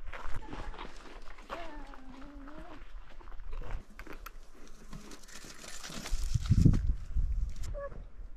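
A young child's short high-pitched vocal sound about a second and a half in, then a gust of wind rumbling on the microphone near the end.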